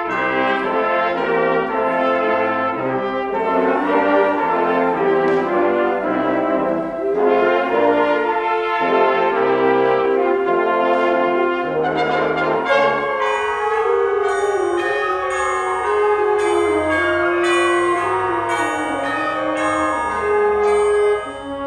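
Concert wind band playing sustained, brass-led chords with flutes. From about two-thirds of the way in, short, high percussion strokes come about twice a second.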